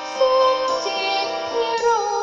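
Music: a high voice singing a slow, held melody over electronic keyboard-style backing, with a sliding note near the end.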